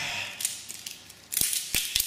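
Sledgehammer knocking against Koss Porta Pro headphones on a concrete floor: light clicks and rattles of the plastic and metal parts, then two sharp knocks about a third of a second apart in the second half.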